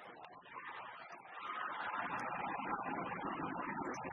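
Arena crowd cheering and beating inflatable thundersticks, swelling sharply about a second and a half in and staying loud.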